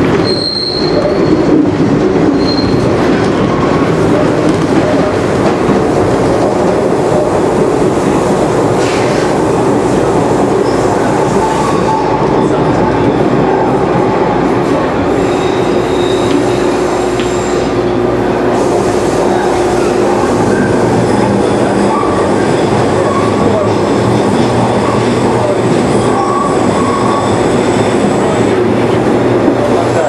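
A TTC H5 Hawker Siddeley subway car heard from inside while it runs through the tunnel: a loud, steady rumble of wheels on rail with a low hum. Thin high-pitched squeals come and go near the start and again through the second half.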